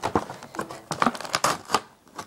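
Plastic toy packaging crinkling and crackling as it is pried open, with a string of sharp clicks and snaps as its plastic clips are worked off.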